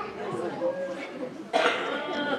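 Murmured voices in a large hall, with a sudden loud cough about one and a half seconds in.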